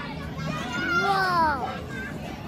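A young child's high-pitched voice: one drawn-out call that rises and then falls in pitch, from about half a second in until near the end.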